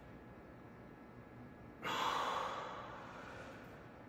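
A man breathing out hard once, about two seconds in, with the exertion of a dumbbell bench press; the breath starts suddenly and fades away over a second or so.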